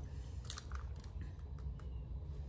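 Faint handling sounds: a few soft, scattered clicks and rustles over a low steady hum.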